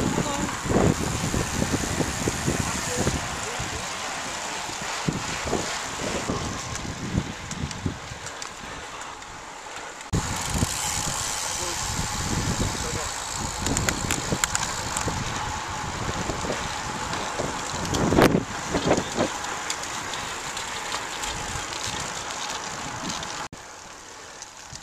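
Wind rushing over the microphone of a camera carried on a moving road bicycle, with road noise underneath. The level steps up suddenly about ten seconds in.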